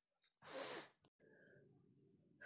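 A single short, breathy burst from a person, about half a second in, such as a sharp breath or a sneeze. Otherwise near silence.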